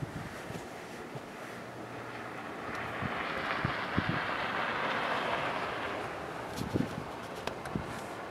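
A passing vehicle: a rushing noise that swells for a few seconds, peaks in the middle and fades away. A few low thumps hit the microphone along with it.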